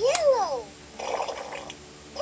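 Electronic sound effects from a LeapFrog Color Mixer toy truck's small speaker: a quick whistle-like tone that rises and falls, then, about a second in, a short rushing noise lasting under a second.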